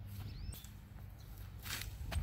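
Faint footsteps of someone running along a dirt path through tall grass, over a low steady rumble.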